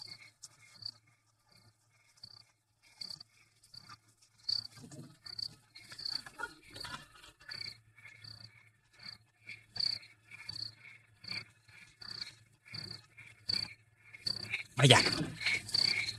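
Crickets chirping steadily in a night ambience, roughly two short chirps a second, with some soft rustling and scuffing in the middle stretch.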